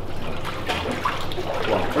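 Water trickling and lapping in a cold plunge tub as a man gets into it, over a steady low hum.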